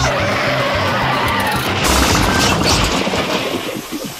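A car crash over music: a wavering squeal early on, then a loud impact about two seconds in, with a low rumble after it that dies away.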